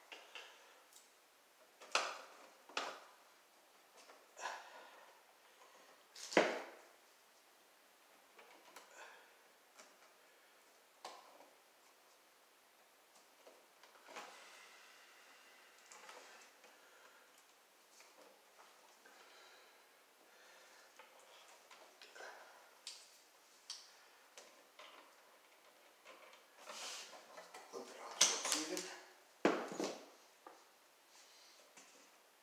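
Hands working electrical wires and pliers at a wall box: scattered small clicks, scrapes and taps of copper wire, plastic and a hand tool, with a sharper knock about six seconds in and a burst of handling near the end.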